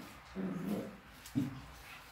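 Border collies play-wrestling, with two short, low dog vocalisations: one about half a second in and a briefer one about a second later.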